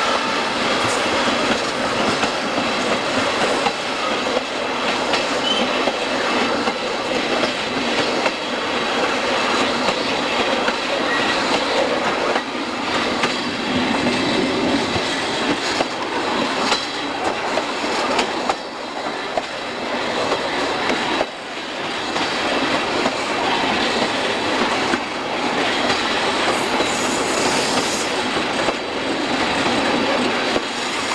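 Moving train heard on board: a steady rattle and rumble of wheels running on the rails, with short irregular clicks and knocks as the wheels pass over the track.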